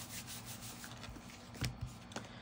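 A hand rubbing a white cardstock panel down flat onto a paper card, a soft papery scratching, with a couple of light knocks near the end as the card is handled.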